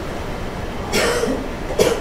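A person coughing about a second in, with a shorter, similar burst near the end.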